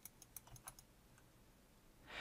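A quick run of about six faint computer keyboard keystroke clicks in the first second, then near silence.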